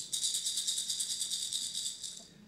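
A hand rattle shaken rapidly and evenly, about ten shakes a second, bright and high-pitched, fading out near the end.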